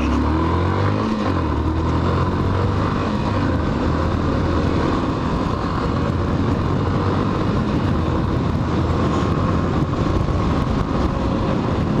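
Single-cylinder four-stroke engine of a 2017 Yamaha Factor 150 motorcycle under way, heard from the rider's position: it rises in pitch in the first second or so as it picks up speed, then runs steadily.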